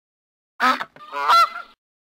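A goose honking twice: a short honk, then a longer one.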